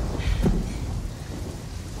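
Thunder rumbling and dying away during the first second, over steady rain.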